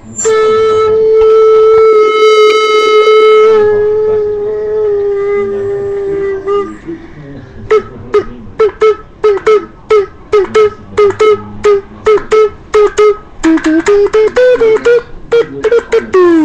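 A child vocalising close to the microphone: one long, loud, steady buzzing note held for about six seconds, then a quick run of short repeated notes, about three a second.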